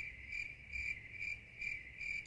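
Stock cricket-chirping sound effect: a steady high chirp pulsing about twice a second, edited in as the comic 'crickets' gag for an awkward pause.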